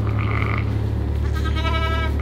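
Sheep bleating twice: a short call, then a longer, wavering one, over a steady low hum.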